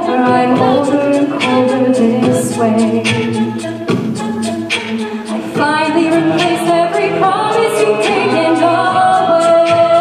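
A cappella group singing a rock song in close harmony, a female lead voice over held backing chords, with a vocal-percussion beat ticking along. The sound thins out about four seconds in, then swells back to full strength.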